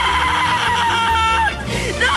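A boy's long, high scream of pain, held steady and breaking off about a second and a half in, as he is pulled while stuck fast in a manhole. Background music with a steady low beat runs underneath.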